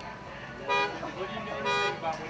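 Triaxle dump truck's horn honked twice, two short blasts about a second apart.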